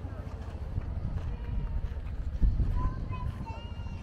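Footsteps on a dirt path over a low rumble, with people's voices chatting in the background, clearest near the end.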